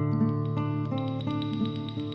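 Background music on acoustic guitar, picking a steady run of notes at about four a second over a sustained bass.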